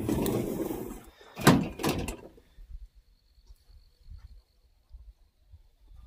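A plastic bumper cover dragged and scraped over a pickup bed for about a second, then a loud knock about one and a half seconds in as it strikes the bed.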